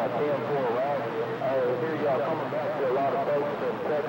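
Radio receiver static with a weak, unintelligible voice from a distant station wavering through the noise.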